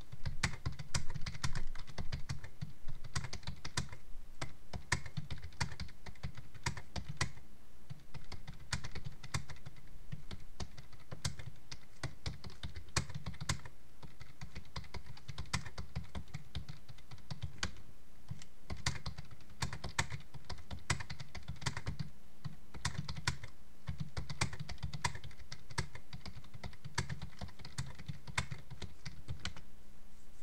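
Typing on a computer keyboard: a quick, uneven run of keystrokes that stops right at the end.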